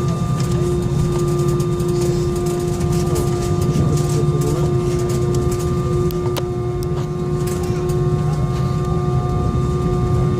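Airbus A320 cabin heard from a seat over the wing: the IAE V2500 turbofan engines run at steady low power with a deep rumble and an even, unchanging whine while the aircraft taxis, thrust not yet advanced for take-off.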